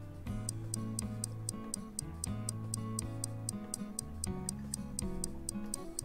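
Countdown timer sound effect: fast, even clock-like ticking, about five ticks a second, that stops shortly before the end. Soft background music with a low bass line plays under it.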